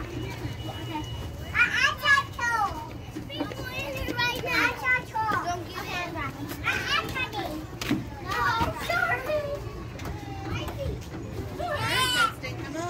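Children's high-pitched voices calling out and chattering, with a loud burst about one and a half seconds in and more scattered through the rest.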